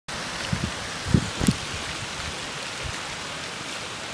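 Steady hiss of heavy hurricane rain falling, with a few brief low thumps in the first second and a half.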